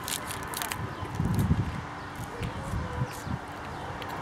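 A Hershey's milk chocolate bar with almonds being bitten into and chewed, with crisp crackles of its foil wrapper, most of them in the first second.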